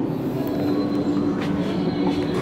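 Schindler 5400 machine-room-less traction elevator cab running, a steady hum and rumble of the car in motion, with a faint click about one and a half seconds in.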